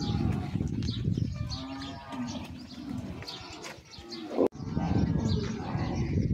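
A herd of Indian cattle mooing repeatedly, several overlapping calls. There is a sharp click about four and a half seconds in.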